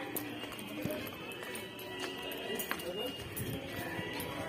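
Footsteps on a paved walkway, with indistinct voices and music in the background.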